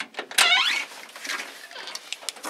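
Glass storm door being opened: a click at the start, then a short squeak about half a second in as it swings, followed by small clicks and rustles.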